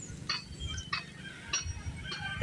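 Faint outdoor background with a low rumble, a few short high-pitched chirps and several light ticks.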